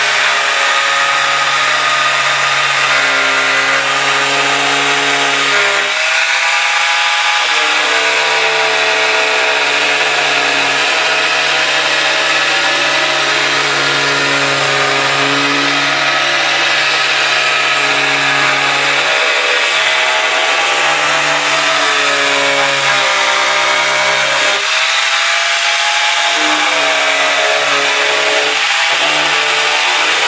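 Electric angle grinder with a cutting disc running continuously as it cuts into a drum, a steady motor whine with cutting hiss. Its pitch dips a few times, near six seconds and again near the end, as the disc bites under load.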